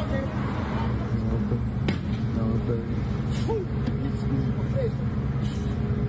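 City bus engine idling with a steady low rumble while scattered voices are heard over it, and a single sharp click about two seconds in.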